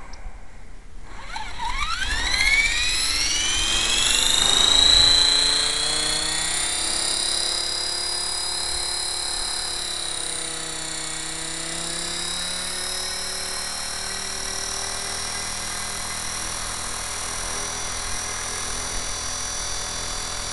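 Esky Honeybee belt CP electric RC helicopter spooling up on the ground: the motor and gear whine rises steeply in pitch from about a second in, is loudest around five seconds in, then settles into a steady high whine as the rotor spins at speed.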